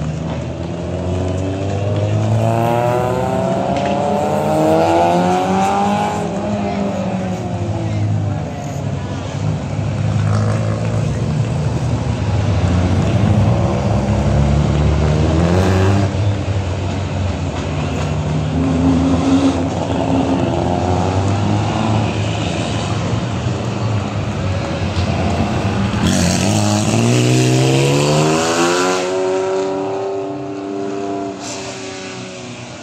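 Several small rally cars driving through a hairpin one after another, their engines revving up and down, the pitch climbing and dropping again and again as they shift. Near the end one car revs hard with a steep rising pitch.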